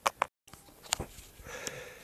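Light handling noise: a few sharp clicks and taps as the camera is moved, broken by a brief dead silence where the recording is cut, then a faint hiss before speech resumes.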